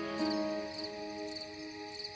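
Slow ambient music of sustained held chords, the chord shifting and its low note dropping out early on, over crickets chirping about twice a second.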